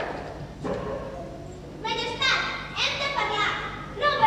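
A child speaking lines from about halfway through, in a high voice.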